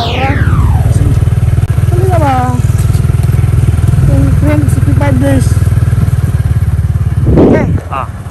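A whoosh sweeping down in pitch over the first second, then an engine running steadily with a low, even drone.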